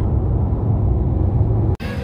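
Steady low road and engine rumble inside a moving car's cabin, cutting off abruptly near the end.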